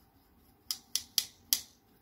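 Four sharp little clicks in quick succession, about a quarter second apart, from makeup tools being handled; they start a little before the middle.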